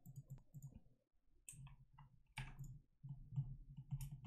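Faint, scattered clicks of a computer mouse as a SketchUp model is worked on screen, the clearest about one and a half and two and a half seconds in.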